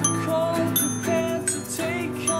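Live acoustic band music: strummed acoustic guitars under bright, ringing high notes from a small rainbow-keyed toy glockenspiel, with a man's voice singing held notes.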